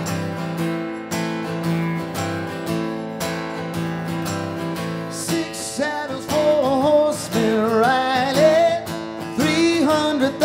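Acoustic guitar strummed in a steady chord pattern. About five seconds in, a man's singing voice comes in over it with a wavering melody.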